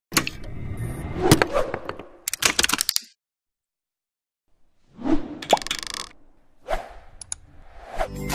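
Animated-intro sound effects: a busy run of pops, clicks and knocks for the first three seconds, ending in a quick rattle of sharp clicks. After about a second and a half of silence come a few short swelling noises and a pair of clicks.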